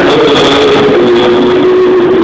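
Loud, distorted live band music with one long held note that drifts slightly in pitch.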